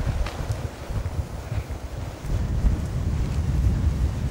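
Wind buffeting the camera microphone: an uneven low rumble that grows stronger about halfway through.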